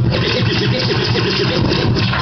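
Loud hip-hop DJ mix coming off a DJ mixer, a dense and cluttered passage with no breaks.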